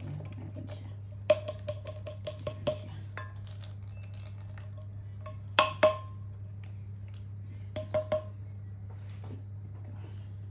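Kitchen clatter: sharp metallic clinks and knocks with a short ring, in three bunches, from handling a can of sweet corn and metal kitchenware, over a steady low hum.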